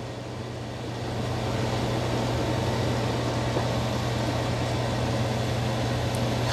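Robot vacuum running: a steady mechanical whir over a constant low hum, a little louder from about a second in.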